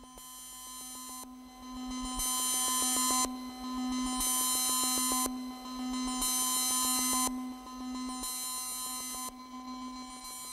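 Electronic synthesizer tones: a steady low hum under fixed higher tones, with a bright, high-pitched chord that pulses on for about a second roughly every two seconds, starting about two seconds in as the sound swells.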